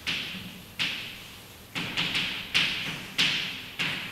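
Chalk writing on a blackboard: a sharp tap as the chalk hits the board at the start of each stroke, then a fading scratch, about eight strokes in the four seconds, irregularly spaced.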